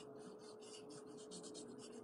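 Faint, scratchy strokes of a watercolour brush, several in quick succession.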